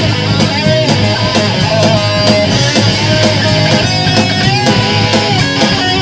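Live hard-rock band playing an instrumental passage between vocal lines. A distorted electric guitar plays a lead line with string bends over bass guitar and fast, steady drums and cymbals.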